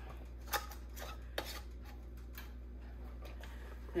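A few light clicks of a metal screw band being twisted onto a glass canning jar over a lid, tightened fingertip tight.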